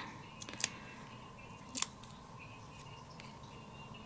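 Faint paper-handling sounds from peeling the release paper off a foam adhesive square on a small cardstock die-cut: a couple of small clicks about half a second in, then one sharper click near two seconds.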